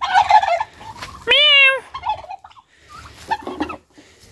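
Domestic turkeys calling: a rough call at the start, then one clear, pitched call lasting about half a second roughly a second and a half in, with softer short sounds after.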